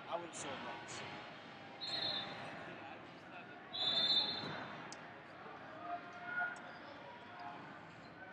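Big-hall tournament ambience of distant voices, with two referee's whistle blasts from the surrounding mats: a short one about two seconds in and a louder, longer one about four seconds in.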